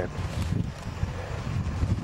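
Wind buffeting a camcorder's microphone: an uneven low rumble.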